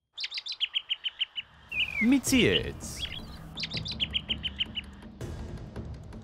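Segment-intro jingle built on bird-chirp sound effects, opening with a fast run of high chirps at about nine a second. A brief voice comes in around two seconds, then a second, shorter run of chirps follows. A low steady music bed runs under it from about a second and a half in.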